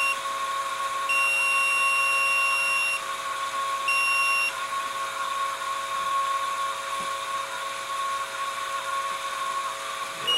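Electrical whine from the high-voltage supply driving the lifter, a FET-switched transformer feeding a Cockcroft-Walton multiplier: a steady tone near 1 kHz, with a higher beep-like tone that cuts in about a second in, drops out at three seconds and returns briefly near four seconds.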